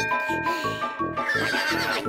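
Lively cartoon music over a quick, regular beat, with a horse whinny sound effect for a toy hobby horse charging in a joust.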